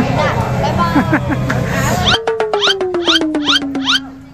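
Voices over a busy background, then an abrupt cut about halfway through to an edited-in sound effect. The effect is a tone sliding steadily downward, with quick regular clicks and chirps about five times a second.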